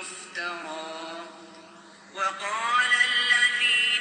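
A man's voice reciting the Quran in melodic tajweed. One drawn-out phrase trails off, and after a short pause a louder new phrase begins about two seconds in.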